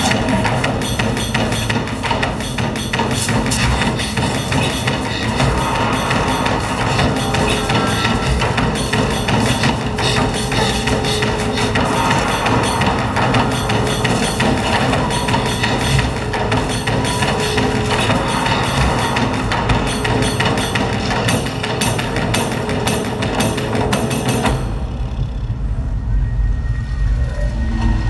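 Show soundtrack music played over loudspeakers, with a steady drum beat. About three-quarters of the way through, the music drops away and a low rumble is left.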